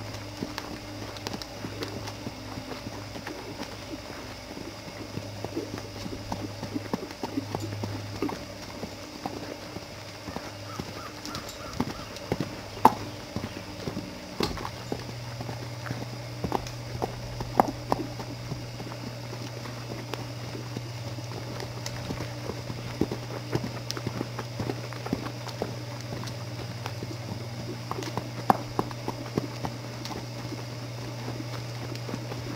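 Hoofbeats of a young reining-bred horse cantering loose on soft dirt footing, irregular dull thuds with an occasional sharper knock. A steady low hum runs underneath and grows louder about halfway through.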